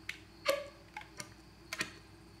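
Flute slap tongue: about six short, sharp pitched pops, unevenly spaced, made by slapping the tongue against the teeth at the flute's embouchure. With only the tongue pushing the air, the pressure is too low to get very high up the second octave.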